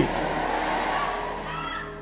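Soft background music of steady held chords, with faint voices from the hall.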